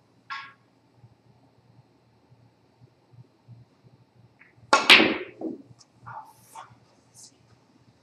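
Snooker shot: the cue tip strikes the cue ball and it cannons into the cluster of reds with one loud, sharp clack nearly five seconds in, followed by several lighter clicks as the scattered balls knock into each other and off the cushions.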